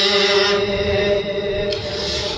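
A man chanting a Pashto naat unaccompanied, holding one long steady note that weakens a little after about a second.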